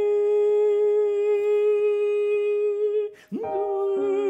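A man humming one long held note of the oboe line over a chord sustained on a digital piano. About three seconds in the held note breaks off and new notes are struck on the keyboard.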